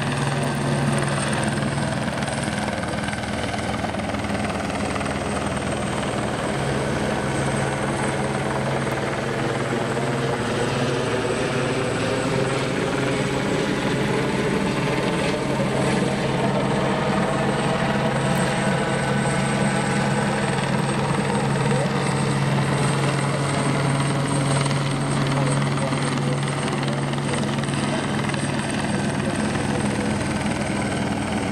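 Helicopter hovering overhead, its rotor and engine a steady low drone whose upper tones slowly bend up and down as it circles.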